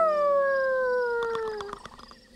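A cartoon werewolf's howl, a person's voice imitating a wolf: one long call that slides slowly down in pitch and fades out near the end, over held notes of background music.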